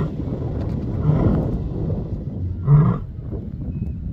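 Lioness roaring: short, deep calls repeated about every one and a half seconds, the loudest near the end.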